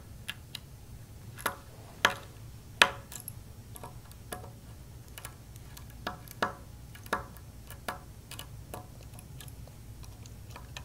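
Irregular small metallic clicks and taps from a mini screwdriver working tiny screws out of a small electronics module, and from the loose screws being handled and set down on the bench. A low steady hum runs underneath.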